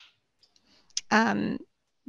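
A single sharp click about a second in, followed straight away by a brief vocal hesitation sound from a person.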